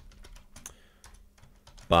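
Typing on a computer keyboard: a quick, irregular run of quiet key clicks.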